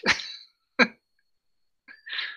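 A person laughing in short separate bursts: one at the start, a brief sharp one about a second in, and a faint one near the end, with dead silence between them as on a video call.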